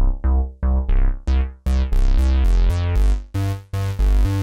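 Roland JUNO-60 software synthesizer playing a chorused bass patch: a repeating line of short, low notes, about three a second. The VCF filter cutoff is being pushed open, so the notes grow steadily brighter from about a second in.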